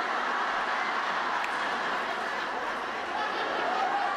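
Theatre audience laughing, a dense, steady wash of many people laughing at once.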